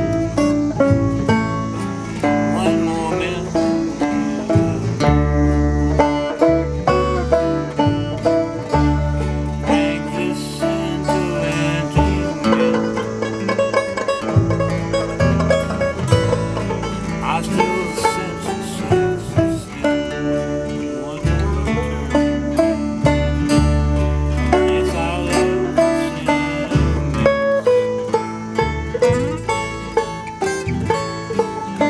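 Acoustic string band playing an instrumental passage: banjo picking over strummed acoustic guitars, with upright double bass. Deep bass notes come in strongly about five seconds in.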